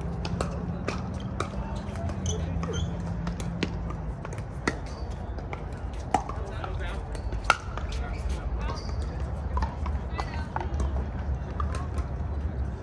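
Pickleball play: sharp pops of paddles striking the hollow plastic ball at irregular intervals, some louder and close, others fainter, over a low background rumble.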